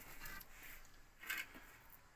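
Quiet background hiss with a couple of faint, brief rustles, one a little after the start and one just past the middle.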